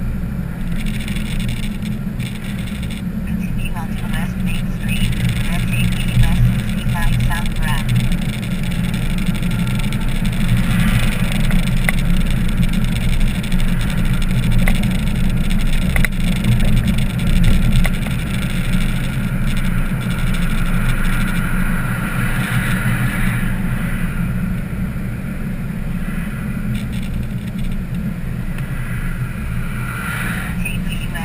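Car driving on a town road, heard from inside the cabin: steady low engine and tyre noise.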